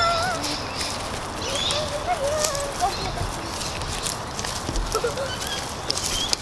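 Footsteps crunching on dry eucalyptus bark and leaf litter as a group walks, irregular and overlapping. Scattered high, wavering calls sound over them.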